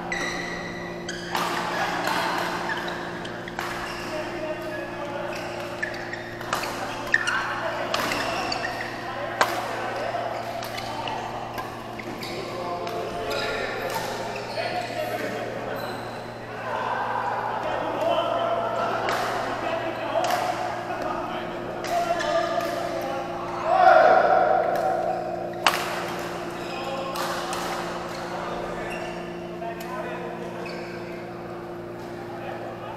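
Badminton rackets striking a shuttlecock during a doubles rally: sharp clicks at irregular intervals, echoing in a large hall, with players' voices and a steady electrical hum underneath.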